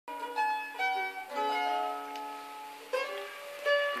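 A 1918 Gibson A4 mandolin plucked in a few loose notes and chords, about half a dozen, each left to ring and die away.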